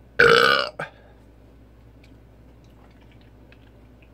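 A man's loud burp, about half a second long, with a short second burst right after it.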